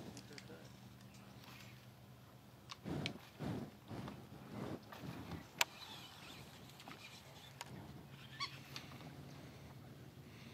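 Quiet pause with faint, indistinct speech a few seconds in, a sharp click near the middle and a low steady hum underneath.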